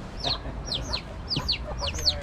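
Ducklings peeping: a quick run of short, high peeps, each sliding down in pitch, about ten in two seconds.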